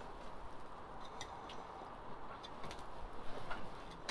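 Quiet outdoor background with a few faint, short ticks scattered through it.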